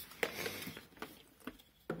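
Faint handling noises: a few light taps and rustles, fading to near quiet in the second half, with one small click just before the end.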